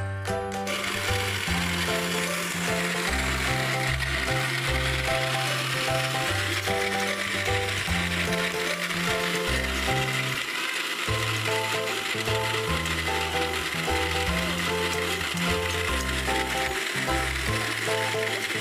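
Electric countertop blender switched on about a second in and running steadily, blending an iced milk drink, under background music with a bass line.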